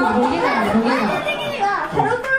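Speech only: people talking in Japanese.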